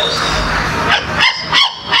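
A person making short, high-pitched whimpering cries into a microphone, after about a second of breathy noise.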